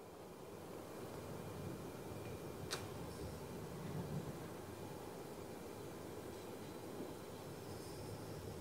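Quiet cigar smoking: a faint, steady breathy hiss as a man draws on a cigar and exhales the smoke through his nose in a retrohale, with one small click a little under three seconds in.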